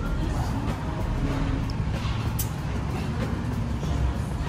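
A steady low rumble with music playing in the background.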